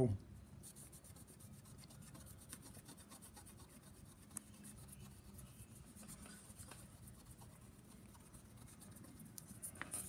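Faint, rapid scratchy rubbing of Nevr-Dull polishing wadding worked under a fingertip across a phonograph reproducer's mica diaphragm laid on a flat surface, polishing a century of grime off the mica.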